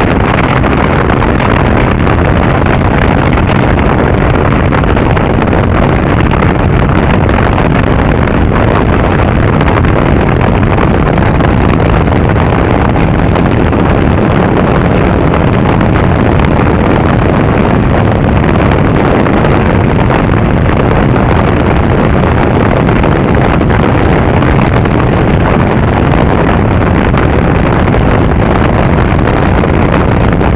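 Loud, steady wind rush on a bike-mounted microphone, with the Triumph Bonneville's parallel-twin engine running underneath at an even cruising speed. No gear changes or changes in pace stand out.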